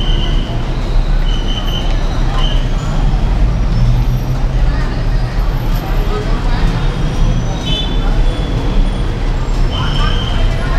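Steady low rumble of busy road traffic, with the chatter of pedestrians walking past mixed in and a few short high-pitched chirps.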